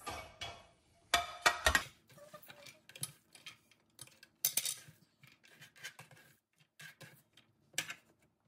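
Kitchen knife scraping and tapping on a wooden cutting board and a ceramic plate as diced onions are pushed off the board, a string of irregular clicks and light knocks, loudest in a cluster about a second in.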